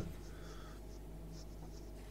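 Low steady electrical hum with faint background noise, in a gap between speakers.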